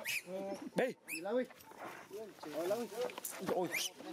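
A baby monkey crying: a quick string of short calls, each rising then falling in pitch, one after another with hardly a pause.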